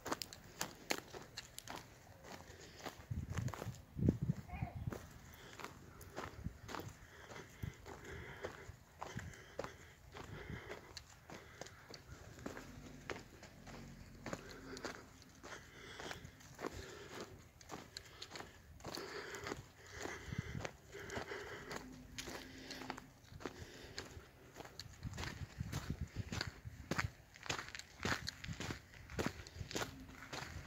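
Footsteps crunching on a trail of dry fallen leaves at a steady walking pace, a quick run of short crackling steps.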